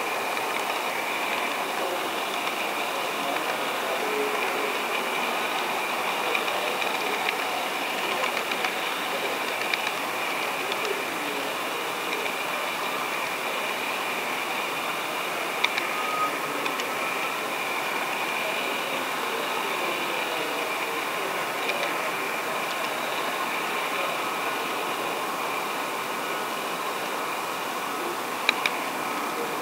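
Model train running along the track: a steady motor and gear whir mixed with wheel-on-rail rolling noise, with a few light clicks along the way.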